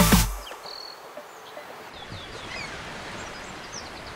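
Intro music cutting off in the first half second, then faint outdoor background noise with small birds chirping in short, high, scattered calls.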